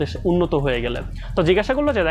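A man speaking, with no other sound standing out.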